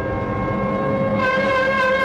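Title music: one long, steady note on a blown horn-like wind instrument, its tone growing brighter about a second in.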